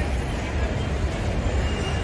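Steady low rumble of street traffic and vehicle engines, heard from the open top deck of a moving tour bus.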